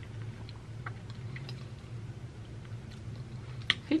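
A person chewing a mouthful of grits and fried egg, with soft wet mouth clicks and one sharper click near the end, over a steady low hum.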